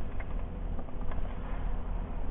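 Steady low rumble of a pickup truck idling, heard from inside the cab, with a few faint clicks.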